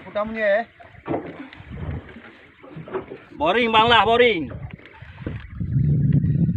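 A man's voice giving two drawn-out calls with a wavering pitch, the second and louder one about three and a half seconds in, with faint knocks and low noise between them. A low rumble comes up near the end.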